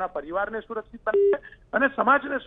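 A single short electronic telephone beep, one flat steady tone about a quarter second long, about a second in, heard over a phone line between stretches of a man's speech.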